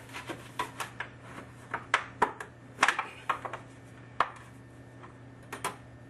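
Irregular light knocks and clinks of a piece of sheet metal being worked into place as a heat shield behind a copper pipe elbow. They are thickest over the first three seconds, with a few more near the end, over a low steady hum.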